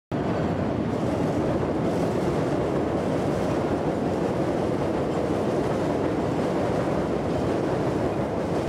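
Chicago 'L' elevated train running along the steel elevated track, a steady, even noise with most of its weight in the low range.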